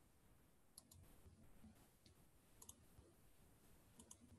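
Near silence, broken by a few faint computer mouse clicks: a pair about a second in and another pair with a single click near three seconds.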